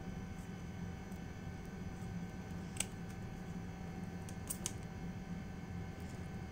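Small hand pruning shears snipping through a green trumpet vine stem: a sharp click about three seconds in and two quick clicks about a second and a half later, over a steady low background hum.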